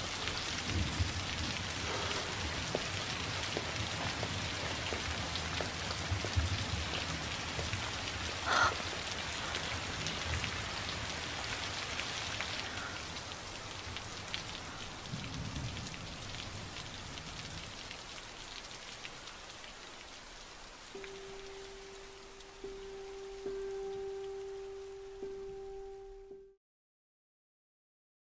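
Heavy rain falling steadily, thinning out gradually over the second half. There is one brief sharper sound about nine seconds in. A single steady held note comes in about five seconds before the end.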